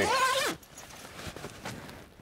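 A zipper on a canvas swag's end panel is drawn in one quick pull of about half a second, its buzz rising in pitch and then holding. Faint rustling follows.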